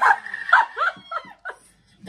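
A woman's high-pitched shriek, held for about half a second, then a run of short yelping cries that fade away about a second and a half in.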